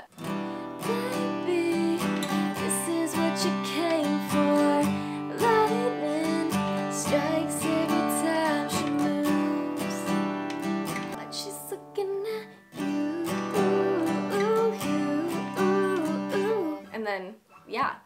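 Taylor acoustic guitar strummed without a capo through an Em7–Cadd9–G–D progression in a down-down-up-up-down-up pattern, with a woman singing along. The playing breaks off briefly about twelve seconds in and stops just before the end.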